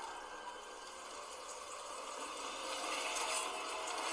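Anime trailer soundtrack: a steady hiss-like ambience that slowly swells, with a faint held tone underneath.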